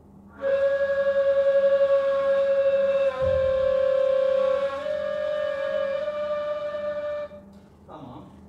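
Ney, the Turkish end-blown reed flute, playing three long held notes. The second is a touch lower than the first, the third a little higher, and they end suddenly near the end. A breathy edge runs through the tone.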